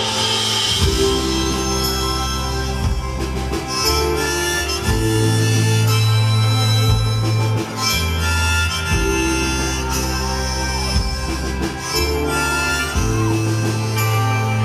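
Live rock band playing an instrumental passage with a harmonica solo, held harmonica notes over sustained bass notes, guitars and drum hits.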